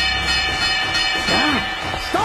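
Boxing ring bell ringing out after a strike, a cluster of steady clanging tones that fades away near the end, with a brief voice over it shortly before it dies.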